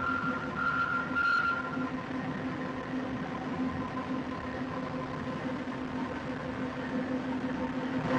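Paper mill machinery at the pulper running steadily: a constant industrial hum with fixed tones. A higher whine sounds over it for about the first two seconds, then stops.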